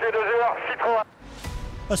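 A man speaking for about a second, then a brief drop in level as background music comes in under the edit, with a narrator's voice starting right at the end.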